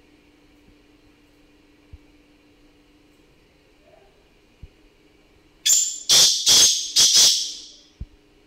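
Black francolin calling: a short first note followed by four loud, harsh notes in quick succession, starting a little past halfway and lasting about two seconds.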